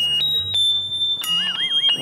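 Electronic alarm from a hand-held megaphone's siren: loud high beeping tones switching back and forth between two pitches, with a short warbling tone a bit over a second in.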